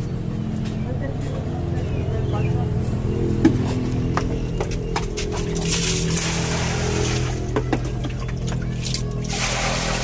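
Water poured from a plastic jug splashing onto bananas in a cooking pot, in two pours about five and a half and nine seconds in, over steady background music.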